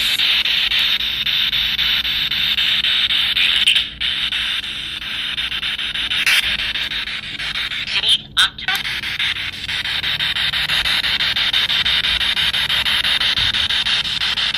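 Spirit box, a radio scanner sweeping rapidly through stations, giving a continuous choppy hiss of radio static. It breaks off briefly about four seconds in and again around eight seconds in.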